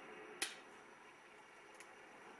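One sharp click about half a second in, then a faint tick near the end, as pliers press a small locking pin into a model aircraft's landing gear support.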